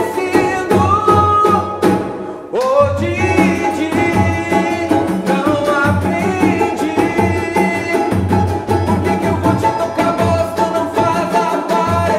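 Pagode samba song: male voices singing over cavaquinho, banjo and hand percussion (pandeiro and rebolo drum) in a steady beat, with a short break about two seconds in before the voice slides back up.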